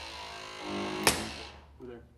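Battery-powered hydraulic rescue ram running as it pushes the steering column and dash, a steady motor whine with a sharp click about a second in, fading out shortly before the end.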